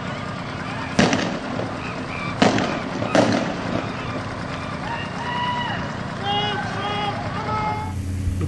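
Three shotgun blasts: one about a second in, then two more close together a second and a half later. Voices call out in the second half.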